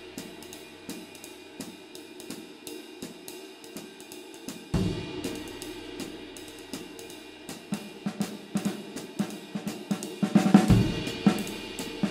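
Meinl 24-inch Byzance Jazz Big Apple Ride played with a wooden stick in a steady ride pattern, a very low-pitched ride with a woody stick sound. Snare comping goes with it, and a bass drum hits about five seconds in and again near the end, where the kit playing gets busier and louder.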